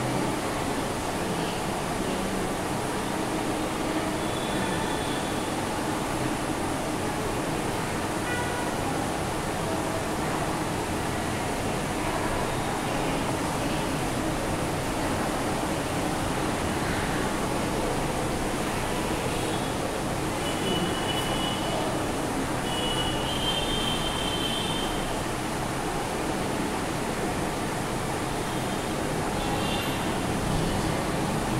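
Steady, even background noise with no speech, and a few faint, brief high squeaks about two-thirds of the way in.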